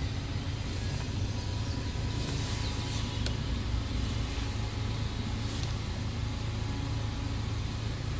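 Car engine idling, a steady low hum heard from inside the cabin, with a faint click about three seconds in.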